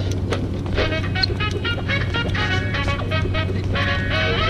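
Music with a steady beat and pitched melody tones, the kind of track played for breakdancing.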